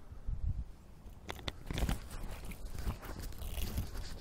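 Handling noise as an AR-15 rifle is lifted and settled on its bipod on a wooden picnic table: soft knocks, rustling and a few sharp clicks about a second and a half in.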